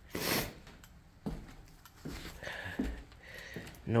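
One hard sniff through a runny nose at the start. Faint scattered knocks and scuffs follow.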